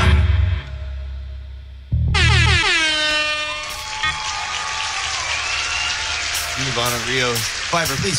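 A live band's last hit cuts off and rings down. About two seconds in a loud horn blast starts and falls in pitch over about a second and a half, followed by a light crackling patter and a voice near the end.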